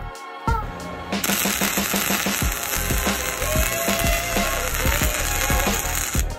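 Electric arc welding on steel: a steady, loud crackling hiss that starts about a second in and runs under background music.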